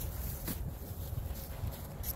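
Footsteps of rubber boots through dry grass and leaf litter, over a low uneven rumble on the microphone.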